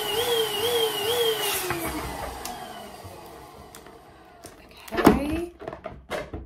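Small electric balloon pump running with a warbling whine that pulses about two and a half times a second as it inflates a latex balloon. About a second in it is switched off, and its whine slides down in pitch and fades. Near the end, loud squeaks of the latex as the balloon is handled and tied.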